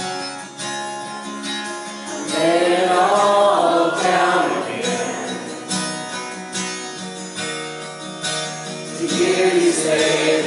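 Live worship song: an acoustic guitar strummed steadily, with women's voices singing over it, swelling about two seconds in and again near the end.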